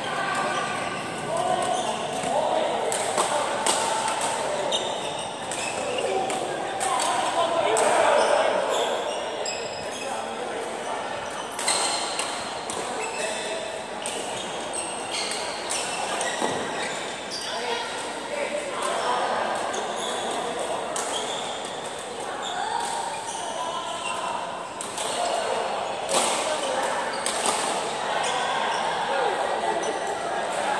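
Badminton rackets striking a shuttlecock in sharp, scattered hits, heard in a large echoing hall over the players' voices.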